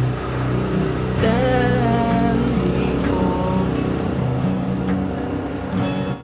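Steel-string acoustic guitar playing sustained chords, with a wordless hummed note from the singer about a second in and a shorter one around three seconds, over a low rumble that fades out midway.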